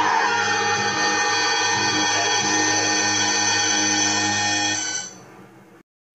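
Horror film score music: one sustained chord held steady, fading out about five seconds in.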